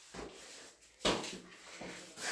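A few soft knocks and rustles in a small tiled room, the clearest a single knock about a second in.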